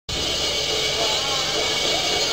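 Steady amplified drone and hiss from the stage sound system, with crowd voices over it, recorded from the audience at a live rock concert just before the music proper comes in.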